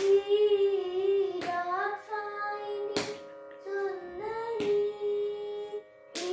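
A boy singing a Carnatic melody in held, ornamented notes that waver and glide, over a steady unchanging drone. A sharp hand slap or clap falls about every second and a half, keeping the tala.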